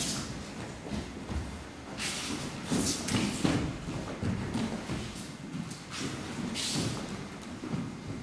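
Bare feet shuffling and sliding on tatami mats, with cloth swishing and soft thuds as partners are thrown and roll onto the mats during a Kinomichi throwing demonstration. There are irregular swishes, the loudest at about two, three and six and a half seconds in.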